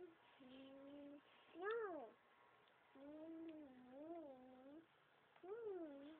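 Faint, drawn-out vocal notes from a young child's voice, several in a row with a wavering pitch, one sliding sharply up and back down about two seconds in.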